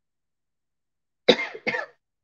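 A man coughs twice in quick succession, two short coughs a little over a second in.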